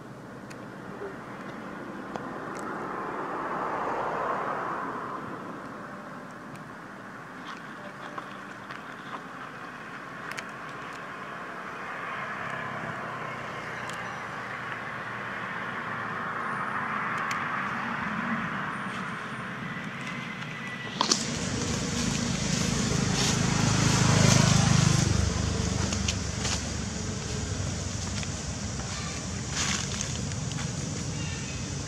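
Road traffic passing: a rushing that swells and fades, then, about two-thirds of the way in, a louder vehicle passes close with a low engine rumble and a hiss of tyres.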